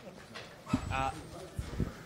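Handheld microphone handling noise as the mic is passed along: low thumps and rumbling, the heaviest near the end, with a man's brief "uh" about a second in.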